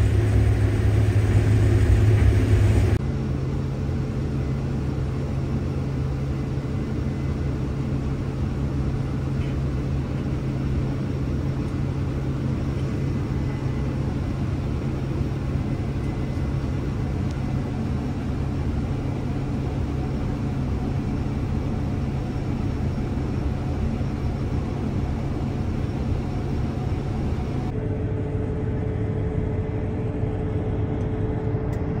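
Combine harvester running, heard from inside the cab while its unloading auger empties corn into a grain cart: a steady low mechanical drone. The hum is louder for the first three seconds, then changes abruptly to a steadier drone, and changes again near the end.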